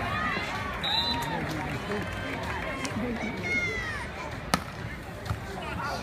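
Scattered crowd voices chattering and calling out around a beach volleyball court. About four and a half seconds in comes one sharp slap of a hand striking the volleyball, followed by a fainter second contact.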